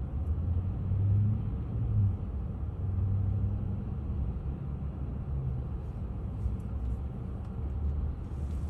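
Low, steady rumble of car and truck engines in traffic moving slowly through a signalled intersection, with an engine hum that swells twice in the first half.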